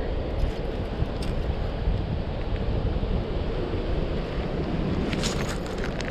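Wind buffeting the microphone, a steady low rumble, with a few light clicks about five seconds in.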